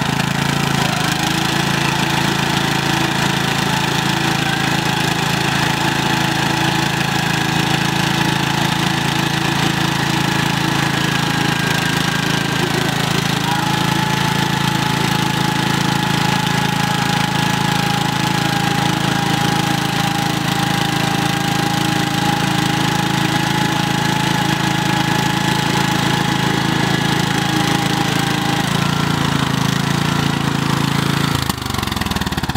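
Huskee riding lawn mower's engine running steadily while its rear wheels spin in deep mud, the mower stuck.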